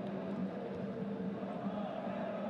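Steady background ambience of a live soccer match broadcast: field and crowd noise with a faint low hum.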